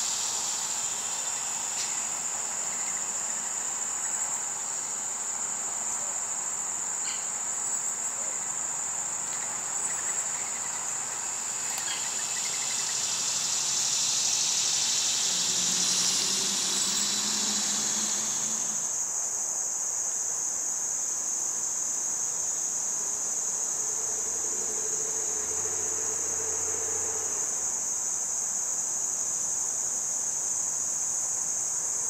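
A steady, high-pitched chorus of crickets trilling without a break. A broader, louder insect buzz swells in the middle and cuts off suddenly.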